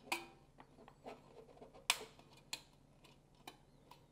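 A few scattered small clicks and taps as the Philips EE2000 kit's blue base panel and its small metal spring clips are handled, the sharpest about two seconds in.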